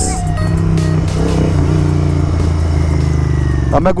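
Royal Enfield Continental GT 650's 650 cc parallel-twin engine running at a steady speed while riding, a low, even drone with no revving.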